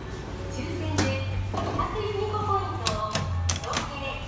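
Inside a Hitachi passenger elevator car: a steady low hum that stops about three and a half seconds in, and several sharp clicks near the end. Voice-like sound runs underneath from about a second and a half in.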